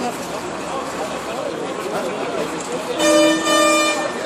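A horn gives two short blasts in quick succession about three seconds in, loud over the chatter of a crowd of people standing around.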